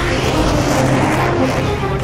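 A loud, steady rushing engine noise with music continuing faintly underneath.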